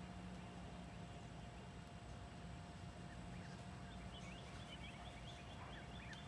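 A bird's rapid run of short high chirps, starting about three and a half seconds in and lasting about two seconds, over a faint steady low hum.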